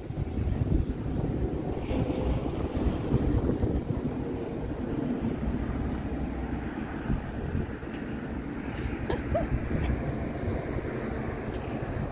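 Wind buffeting the microphone: a steady, unsteady-level rush of noise, strongest in the low end.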